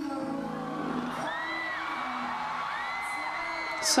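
Live concert audio from a piano-accompanied performance: sustained piano and vocal notes, with high, drawn-out screams from the audience rising over them twice.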